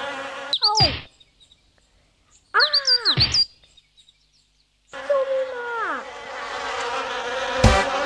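Cartoon sound effects: quick high bird chirps, each burst with a falling tone sliding down beneath it, heard twice with silence between. From about five seconds in, a steady buzzing drone runs on, with another falling tone about a second after it starts.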